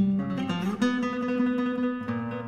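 Solo classical guitar: a plucked chord rings out, a note slides in pitch about half a second in, and a new note is struck and held through the rest.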